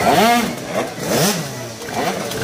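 Tuned two-stroke racing scooter engines revving in short throttle blips, the pitch sweeping up and down about three times. They are warming the rear tyre in a burnout at the start line.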